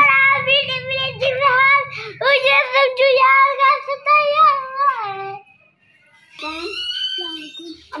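A young boy singing a song in a high child's voice, drawing out long notes. He breaks off briefly about three-quarters of the way through, then a higher phrase follows.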